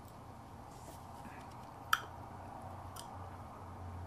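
A glass bottle being handled and raised to drink over quiet room tone: one sharp click about two seconds in, then a fainter click about a second later.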